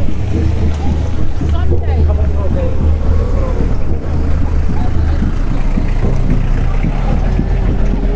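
Steady low wind rumble on the microphone of a walking camera, with indistinct voices of people in the street over it.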